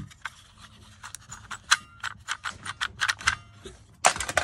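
Small plastic toys clicking and knocking together as hands rummage through a box of loose action figures, in a quick irregular run of light ticks.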